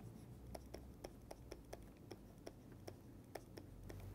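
Faint, quick, uneven run of small clicks from a stylus tapping and sliding on a pen tablet as a word is handwritten, about five a second, over a faint low hum.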